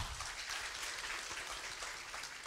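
Audience applause: many people clapping steadily together.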